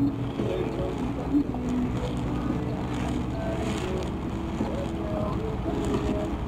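Steady low rumble of a vehicle driving at highway speed, with a song's sung melody playing over it.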